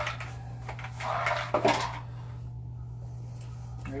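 Small-part handling at the panel: a brief scraping rustle ending in a sharp click about a second and a half in, over a steady low hum.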